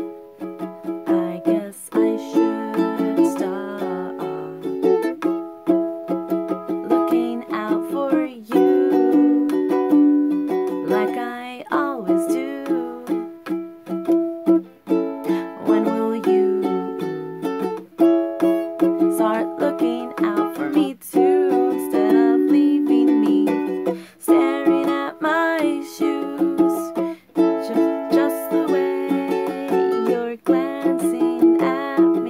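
Ukulele strummed in a steady rhythm through a repeating chord progression, with brief breaks between phrases.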